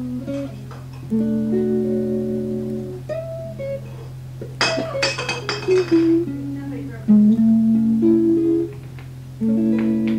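Guitar music, a run of held chords and single notes, with a burst of sharp strums about halfway through followed by a falling line of notes. A steady low hum runs underneath.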